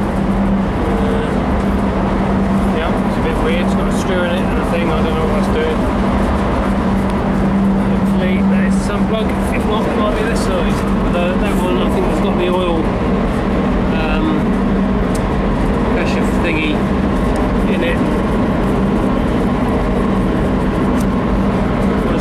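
Loud, steady machinery drone with a constant low hum, unbroken throughout, with scattered small clicks and taps of metal parts being handled.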